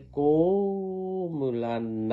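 A man's voice chanting in Karen, drawing out one syllable on a held note for about a second, then dropping to a lower held note.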